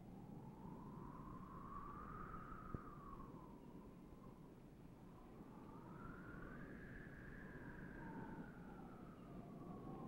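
Faint, eerie whistling tone on the film soundtrack that slowly rises and falls in pitch, peaking twice, with a fainter second tone running beside it.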